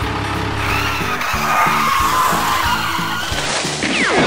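Cartoon tyre-skid sound effect, a long hissing squeal as a toy truck brakes, over a steady beat of children's background music. Just before the end a whistle falls sharply in pitch as the truck drops into a pit.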